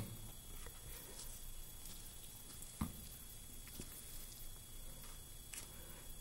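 Faint sounds of a scalpel cutting through a dogfish shark's stiff, rubbery skin, with one sharp click a little under three seconds in.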